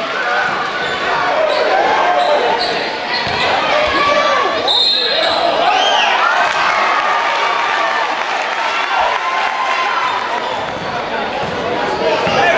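Game sound from a basketball court in a gym: the ball dribbling on the hardwood floor, sneakers squeaking, and the crowd's voices and shouts throughout, echoing in the hall.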